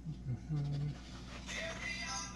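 A man's short low hum near the start, then about one and a half seconds in a phone's ringtone starts playing and keeps going: an incoming phone call.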